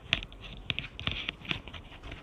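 Cloth rustling as hands lift and turn cut pieces of skirt fabric, with a few short, crisp scrapes and clicks.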